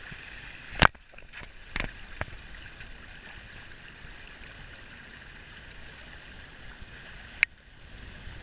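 Water rushing and churning along the hull of a heeled 12 Metre yacht under sail. Sharp knocks about a second in, at about two seconds, and again near the end.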